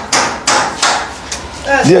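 Steady hand clapping at about three claps a second, each clap sharp and ringing briefly. A voice joins in chanting near the end.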